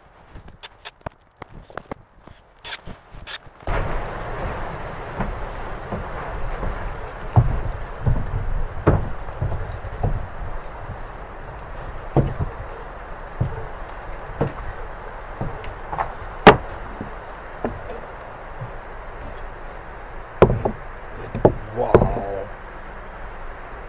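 Scattered knocks and thumps of timber being handled on a wooden boat roof, with a few sharp clicks at first. About four seconds in, a steady hiss sets in abruptly and runs under the knocks.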